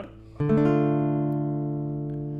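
Classical nylon-string guitar playing a D minor chord, struck once about half a second in and left to ring, slowly fading.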